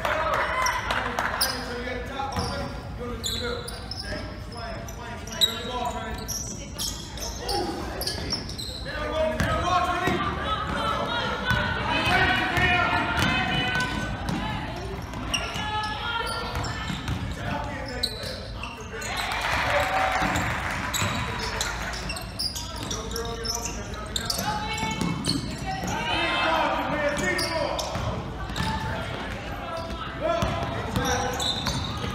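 Basketball being dribbled on a hardwood gym floor during play, with indistinct voices calling out and echoing in the gym. There is one sharp knock about five seconds in.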